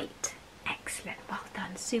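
Speech only: a woman speaking softly, partly in a whisper, with fuller voiced words starting near the end.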